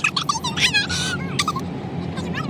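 A girl's high-pitched laughing and squealing in several short bursts, over the steady low hum of a moving car's cabin.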